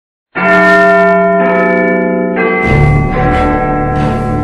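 Large bells chiming, struck a few times about a second apart, each stroke ringing on under the next, with a deeper, heavier stroke near the end.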